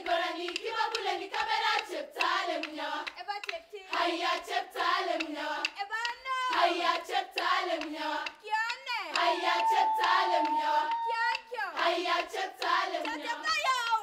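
A girls' choir singing a Marakwet folk song unaccompanied by instruments, with frequent sharp percussive hits in time with the song. About halfway through, one high note is held for a couple of seconds.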